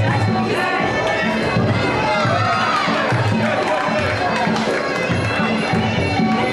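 Music with a steady drum beat and a wavering melody plays under crowd noise and voices from the ringside audience.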